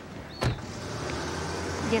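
A car passing close by, its engine and tyre noise growing louder over the second half, after a single sharp click about half a second in.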